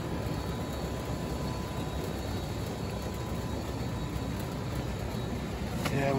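Outdoor air-conditioning condensing unit running, its fan and compressor giving a steady whoosh and hum with a faint steady whine. The system has a refrigerant leak and has frozen up.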